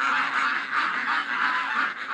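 Ducks and geese calling, a quick unbroken run of honks and quacks, about four a second.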